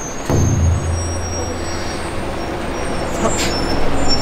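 Green city bus moving slowly past at very close range, its engine running with a steady low drone that starts about a third of a second in.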